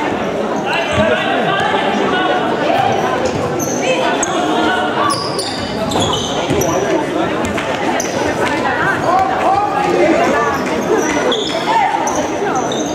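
Indoor football in a sports hall: the ball thudding off feet and the hard floor again and again, with short high squeaks of shoes and players' shouts and spectator voices ringing in the echoing hall.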